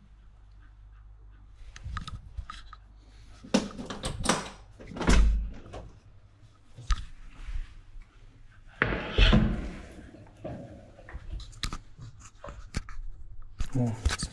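Handling noises of getting a dog ready to go out: a string of knocks, thumps and rustling from the harness, leash and a hallway door, with the loudest thumps about five and nine seconds in.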